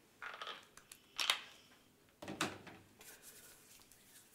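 A squeeze tube of hand cream being pressed out into a palm: a few short, noisy spurts, the loudest about a second in. A brief spoken "ja" follows about two seconds in.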